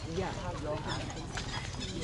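Background voices of people talking at some distance, quieter than the nearby guide, with a few faint light ticks.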